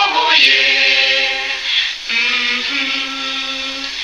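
Sung music: voices holding long, steady notes, one phrase ending just before halfway and a second one running on to the end.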